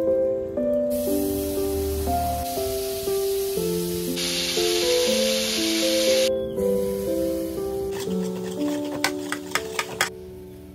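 Background music with a steady piano-like melody. Over it, fat melting in a hot wok on a gas burner sizzles for about two seconds near the middle. Near the end come several sharp clicks of a metal spoon against a steel pot.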